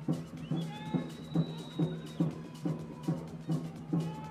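Background music with a steady drum beat, a little over two beats a second, over a held low note.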